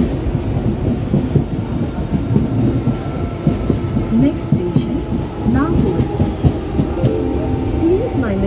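Medha-equipped EMU suburban train running along the track, heard from inside the coach: a steady loud rumble of steel wheels on rail with repeated clicks over the rail joints, and a faint steady whine above it.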